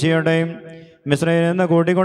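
Male choir chanting an Orthodox liturgical hymn into a microphone, on long held, gently bending notes. A phrase dies away about half a second in, and after a short breath the chant resumes a little past one second.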